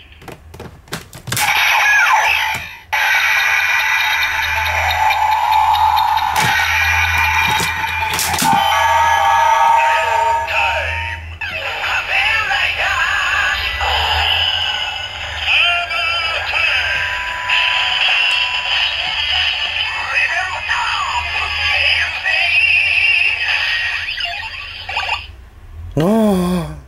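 DX Ziku Driver toy transformation belt playing its electronic standby music and synthesized announcement voice for the EX-Aid Ride Watch Armor Time sequence. A few sharp plastic clicks come in the first couple of seconds and again around six and eight seconds in as the Ride Watch is slotted in and the belt is worked.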